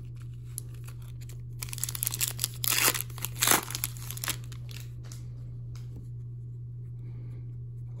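Foil wrapper of an Upper Deck hockey card pack being torn open, with a run of short crinkling, tearing bursts from about one and a half to four seconds in.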